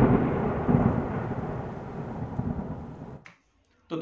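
Dramatic logo-intro sound effect: a heavy, thunder-like rumble that slowly fades and cuts off about three seconds in.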